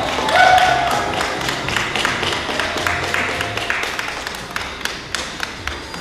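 A quick run of sharp taps, several a second, ringing in a large hard-walled room.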